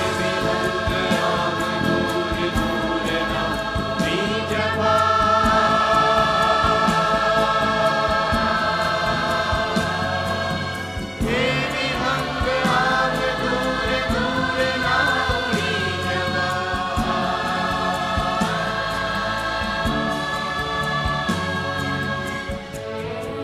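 Large mixed choir of men and women singing a Gujarati song in long held notes, backed by a live band with drum kit. A brief dip about halfway through, then a new phrase begins.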